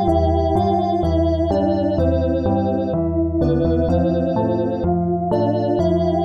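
Winter/dungeon synth music: organ-like synthesizer chords over a low bass, the chords changing about every second at a steady level.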